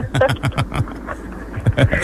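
Low, indistinct talk in a radio studio, quieter in the middle.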